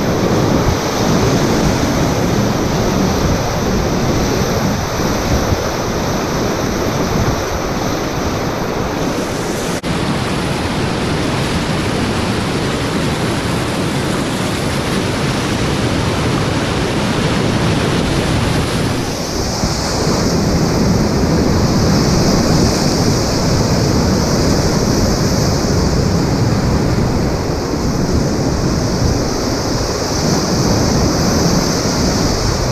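Loud, steady rushing of whitewater rapids heard from a packraft on the river, running at about 950 cfs, with spray and wind buffeting the microphone. The sound's character shifts abruptly about ten seconds in and again near twenty seconds.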